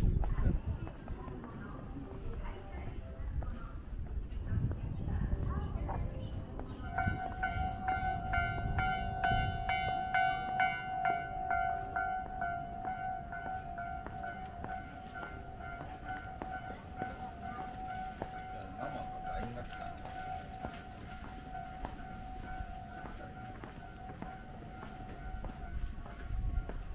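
Japanese railway level-crossing warning bell ringing: a repeated high electronic tone that starts about seven seconds in and keeps going, over footsteps and street noise.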